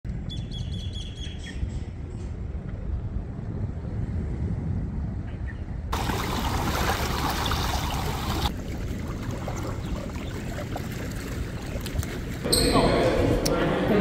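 Birds chirping over a low rumble for the first couple of seconds, then, after a sudden change, sea water washing and splashing against shoreline rocks as a loud, even hiss. Voices come in near the end.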